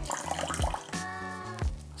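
Apple cider vinegar poured from a small glass dish into a glass bowl of eggs and oil: a short liquid splash and trickle, over background music.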